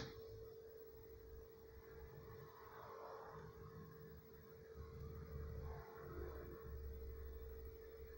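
Faint steady tone with a low rumble and hiss from a home-made germanium-diode crystal radio while its variable-capacitor tuning knob is turned; no station is coming through. A sharp click comes right at the start.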